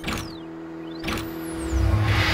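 Sound-designed intro sting: whooshes that sweep down and up in pitch, with sharp hits at the start and about a second in over a held low tone, swelling into a loud deep rumble near the end.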